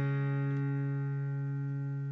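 Background music: a strummed acoustic guitar chord ringing on and slowly fading.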